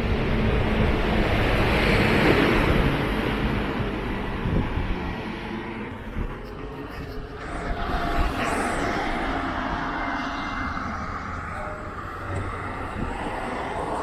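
A motor vehicle passing close by, its noise swelling over the first couple of seconds and then fading, with steady outdoor traffic noise after it and a second, lighter swell about eight seconds in.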